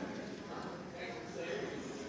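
Faint, indistinct chatter of several people talking in a large room after a church service.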